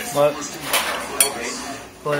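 Eating utensils clinking against a bowl a few times, one sharp click standing out a little past the middle.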